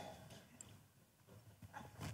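Near silence: room tone, with a few faint small ticks in the second half.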